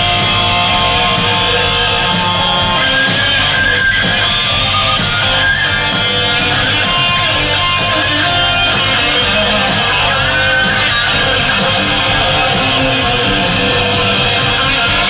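Distorted electric guitar playing lead lines with string bends over a rock backing track with a steady drum beat.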